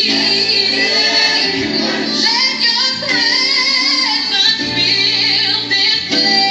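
Recorded gospel worship song with female singing, played loud over a speaker system.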